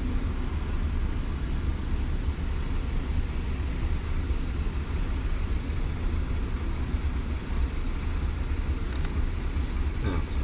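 Steady low rumble inside a car's cabin: a taxi's engine and road noise at low speed in traffic.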